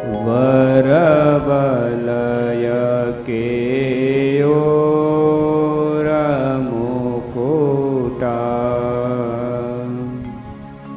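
A voice singing a slow devotional chant in long held notes that bend and waver in pitch, over a steady low drone.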